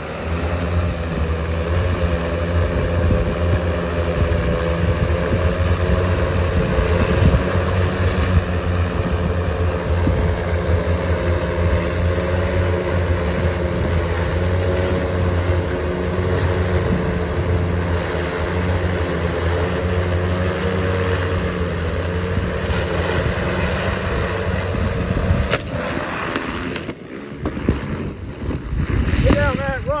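Large six-rotor drone's propellers and motors running loud while it hovers carrying a boy, the hum wavering in pitch as the motors work to hold the load. Near the end a sharp crack and the hum cuts off as the drone crashes.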